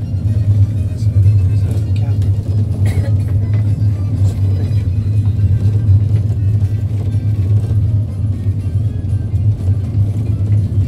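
Steady low drone of a moving road vehicle heard from inside, with music playing.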